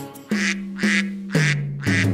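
Three cartoon duck quacks, about half a second apart, over children's backing music.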